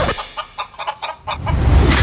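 Domestic hen clucking: a quick run of short clucks, followed near the end by a swelling rush of noise with a low rumble.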